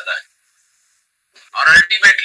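A man's voice lecturing in Hindi over a video call. His words break off just after the start, there is about a second of dead silence, and he speaks again near the end.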